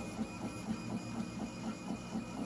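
3D printer running, its stepper motors making a rhythmic pulsing of about five pulses a second, with a faint steady high whine.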